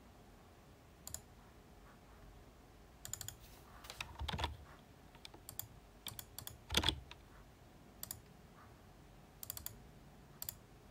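Faint, scattered taps of computer keyboard keys and mouse buttons, a few single clicks and short clusters, the loudest a little past the middle, as a hex colour code is copied and pasted.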